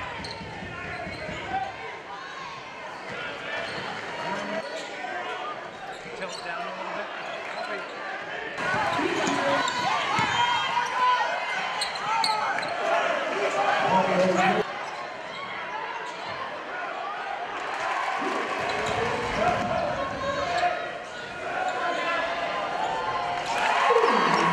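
Indoor basketball game sound in a gym: a ball bouncing on the hardwood court under steady crowd noise. The crowd gets louder for about six seconds from roughly eight seconds in, then drops off sharply.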